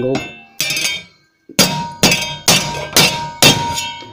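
Rubber mallet striking a sheet-metal body panel clamped in a bench vise, hammering it to an angle. One blow, a short silent gap, then five blows about half a second apart, each with a brief metallic ring.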